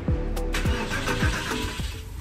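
Porsche 996 911's M96 flat-six engine starting and running, fired up to warm the oil before it is drained, with background music over it.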